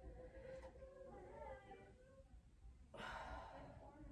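A woman exercising breathes out audibly in a short, breathy exhale about three seconds in. Before it the sound is faint, with a low murmur of voice.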